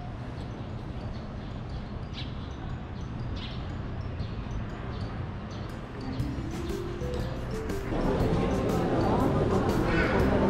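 Low, steady street ambience, then background music fading in, its tune stepping upward about six seconds in. From about eight seconds it gets louder, with music and people's voices in a busy public space.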